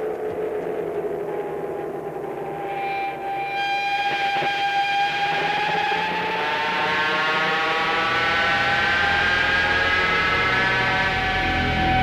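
Electronic music: layered sustained synthesizer tones whose pitches slowly glide and bend against each other, one sliding up in the second half. A low drone comes in partway through and grows stronger near the end.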